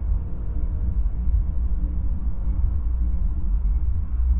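A deep, steady low rumble, with faint sustained tones lingering above it.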